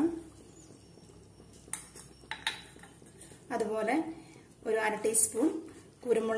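A few short, sharp clinks of kitchen utensils against a dish or pan, about two seconds in.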